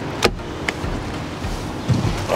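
Car door of a dark SUV: a sharp latch click as it opens, then a heavy low thud as the door is shut near the end. A steady engine hum runs underneath.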